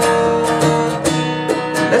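Steel-string acoustic guitar strummed in a steady rhythm, chords ringing between the strokes.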